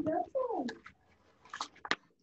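A young child's voice making a short sound that falls in pitch, followed by two brief crackles of paper sheets being handled.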